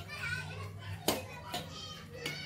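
Children's voices chattering and calling out, with one sharp click about a second in, the loudest sound.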